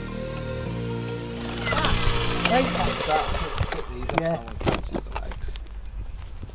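Background music that ends about two to three seconds in, giving way to electric demolition breakers chiselling into a thick, steel-reinforced concrete foundation, with brief voices.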